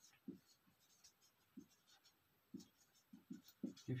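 Marker pen writing on a whiteboard: a run of short, faint strokes and squeaks as a word is written out.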